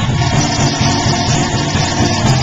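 Live gospel praise-and-worship music: a choir singing with hand clapping over a band, with a steady low bass line underneath.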